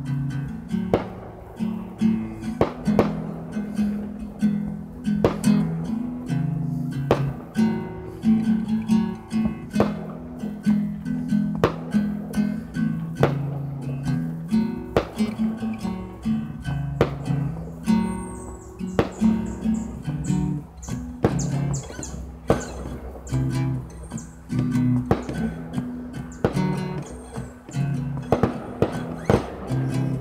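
Acoustic guitar strummed steadily, one chord about every second, moving through a chord progression as an instrumental.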